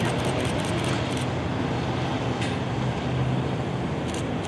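Motorcade of large SUVs driving past at low speed: a steady engine hum and tyre noise on the road. A rapid run of faint high ticks sounds during the first second or so.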